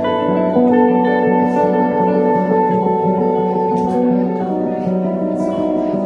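Two guitars playing together in long, held, overlapping notes that keep ringing and shifting in pitch, a slow and dense wash of tones.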